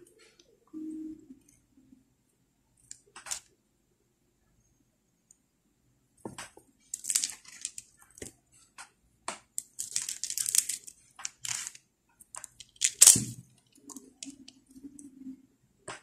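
Pearl and crystal beads and nylon fishing line being handled and threaded, giving irregular crackling and rustling with small clicks. It starts quietly with a few faint ticks and grows busier about six seconds in, with the loudest crackle near the end.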